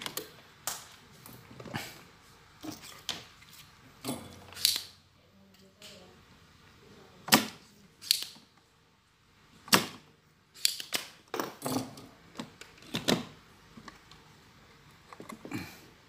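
Irregular sharp clicks and taps of tools and fingers on a TV circuit board while an electrolytic capacitor is desoldered and pulled out, with two louder snaps about seven and ten seconds in.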